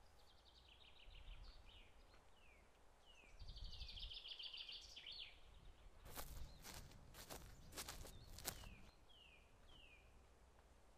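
Faint outdoor birdsong: a small songbird's rapid high trills and short downslurred chirps. From about six seconds in, a short run of footsteps on dry ground, about eight steps, as someone walks up.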